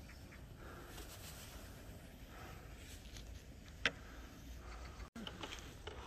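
Faint steady outdoor background noise, with one short sharp click about four seconds in.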